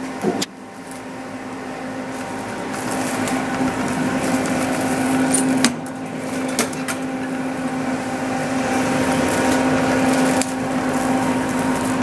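Beseler semi-automatic shrink wrap machine running with a steady low hum and a hiss that slowly grows louder, as it heats up. Sharp clicks come about half a second in and again about six seconds in, the later one the loudest, as its sealing frame is worked.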